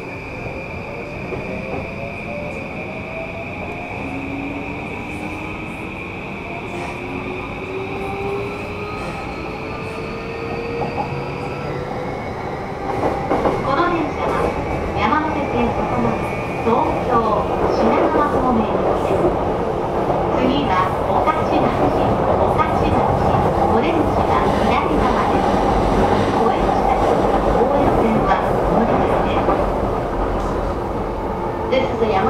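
Onboard sound of a JR East E235 series motor car: the traction inverter and motors whine in a steady high tone, with several tones rising in pitch as the train accelerates. About twelve seconds in the high tone stops and louder running noise of wheels on rail takes over, with squeals and rapid clicking.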